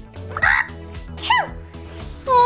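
A person's voice making two short non-word character sounds over background music: a rough, gurgly one about half a second in, then a brief cry that rises and falls in pitch.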